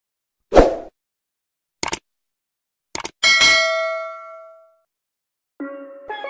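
Intro sound effects: a heavy hit, two short clicks, then a bright metallic ding that rings and fades over about a second and a half. Music starts near the end.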